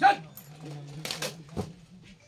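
A short voice-like cry at the very start, then a few sharp clacks of rifles about a second in, as a line of police honour guards brings their rifles up in a drill movement, over a faint steady hum.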